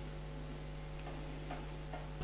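Quiet room tone: a steady low electrical hum with a few faint, irregular ticks.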